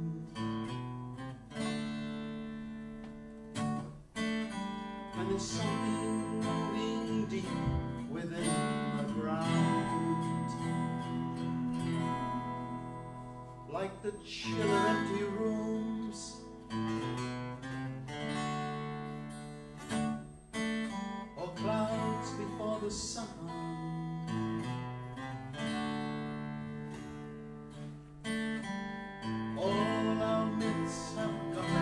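Acoustic guitars strumming and picking chords together in an instrumental passage of a folk song, with no singing yet.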